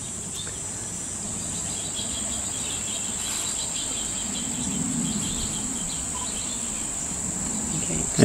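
Insects trilling steadily in a continuous high-pitched drone, with a fainter, rapidly pulsing chirp joining in around the middle.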